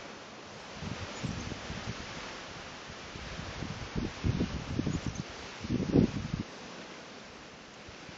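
Gusts of freezing wind buffeting the microphone in irregular rumbling bursts over a steady hiss of wind, building from about a second in to the strongest gusts just past the middle, then dropping back to the steady hiss.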